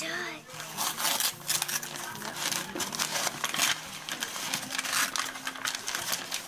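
Brown kraft-paper wrapping being torn and pulled off a cardboard shipping box: a quick run of rough paper rips and rustles.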